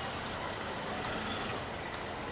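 Steady low rumble of road traffic, with no distinct single event.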